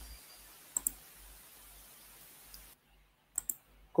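TV-static hiss, an even white-noise sound effect, that cuts off suddenly near three seconds in. A couple of short clicks come about a second in and again near the end.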